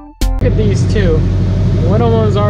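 Electronic music with drum hits cuts off a moment in, giving way to the steady idle of a Toyota Celica's four-cylinder engine warming up, with a voice over it.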